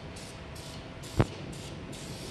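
Aerosol can of Easy-Off oven cleaner sprayed in several short hissing bursts onto the last spot of old paint on a truck door. There is one sharp knock about a second in.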